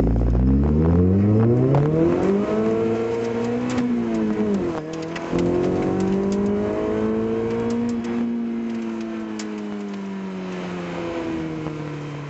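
Citroën Saxo VTS's 1.6-litre 16-valve four-cylinder engine heard from inside the cabin under hard acceleration: the revs climb, break at a gear change about five seconds in, climb again, then fall away steadily towards the end as the driver eases off.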